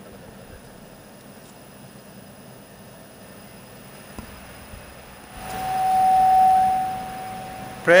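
Faint background noise, then about five seconds in a steady single-pitched ring from the public-address system, swelling with a rush of noise and fading over about two and a half seconds: microphone feedback through the PA.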